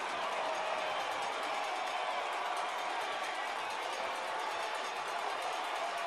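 Steady crowd noise from a stadium, an even din without clear individual voices.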